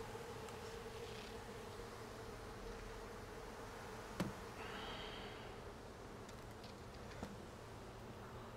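Honey bees buzzing in a steady hum from a large colony swarming over comb and an open hive box. A light knock sounds about four seconds in and a smaller one near the end.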